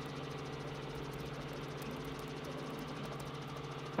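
Helicopter engine and rotor noise heard through the onboard microphone, a steady hum with a fast, even beat.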